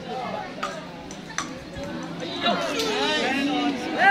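Several people talking and calling out, their voices getting louder and higher-pitched in the second half. Two sharp clicks in the first second and a half.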